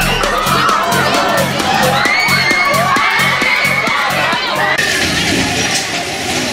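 Many young riders screaming and shrieking together on a giant swinging pendulum ride, their cries rising and falling, over background music with a steady beat that stops about five seconds in.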